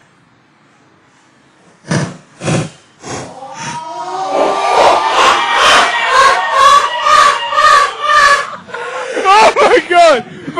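After two dull thumps, loud yelling and laughing from young men, pulsing about three times a second and growing louder toward the end.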